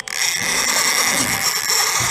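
Conventional fishing reel's clicker buzzing steadily as line is pulled off fast: a hooked fish, here a shark, making a run against the clicker.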